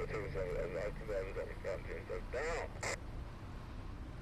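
A man muttering quietly in a quick run of short syllables, with a louder rising syllable about two and a half seconds in and a short sharp sound just after; a faint low hum underneath.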